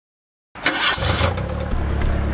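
Old sedan's engine cranking and catching after about half a second of silence, then a high-pitched squeal that comes in a little after a second, dips slightly in pitch and holds steady over the running engine.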